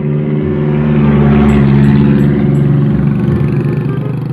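A loaded pickup truck and a motorcycle driving past close by: engine and tyre noise swell to a peak about a second and a half in, then fade as they pull away.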